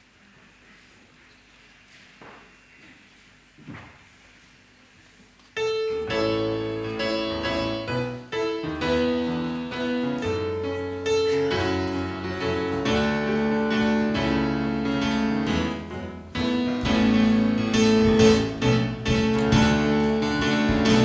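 Near-quiet hall with a couple of faint knocks, then about five and a half seconds in a keyboard band starts the introduction to a hymn, with piano-like chords over low bass notes.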